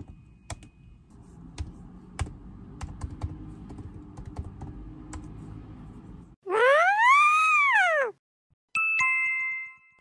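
Slow, sparse typing: single keystroke clicks spaced well apart, over a low room hum. About six seconds in, an added sound effect: a loud tone that sweeps up and back down, then a two-note electronic ding held for about a second.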